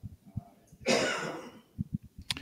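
A man's short throat noise: one cough-like burst about a second in, fading quickly.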